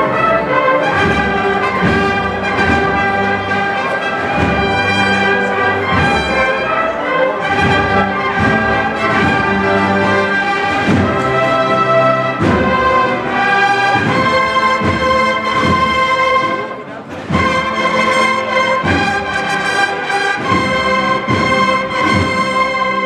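Brass band with drums playing a Holy Week processional march, with long held brass notes over a steady drum beat; the music drops back briefly about seventeen seconds in, then swells again.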